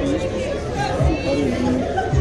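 Indistinct chatter of people talking near the microphone, words not made out.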